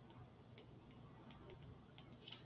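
Near silence, with a few faint, light ticks of a stylus tapping a tablet screen while handwriting.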